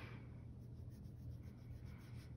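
Faint pencil strokes scratching on sketchbook paper as a drawing is shaded in.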